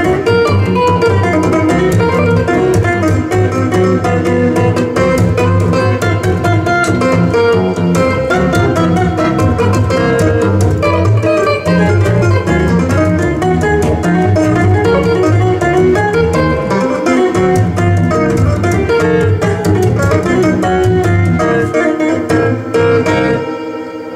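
Two-handed tapping on a touch-style stick instrument: a stepped bass line under a higher melody, played continuously and stopping abruptly near the end.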